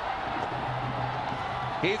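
Stadium crowd noise, a steady din of cheering after a six is hit, with a low steady note joining about half a second in. A commentator's voice starts near the end.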